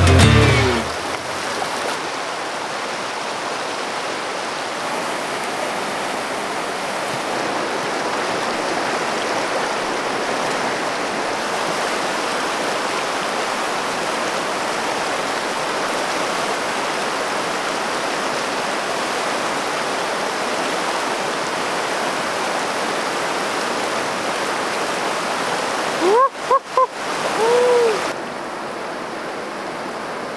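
Swollen mountain trout stream rushing steadily over rocks and riffles. Near the end a few short rising-and-falling calls briefly break in.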